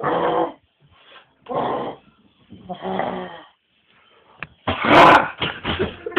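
A person's voice making short animal-like grunts in about five separate bursts with pauses between, then laughter near the end.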